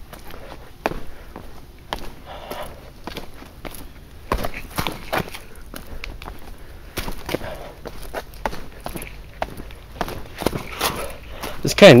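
Footsteps walking down a stone trail strewn with dry leaves, an irregular run of scuffs and knocks, with the walker's heavy breathing.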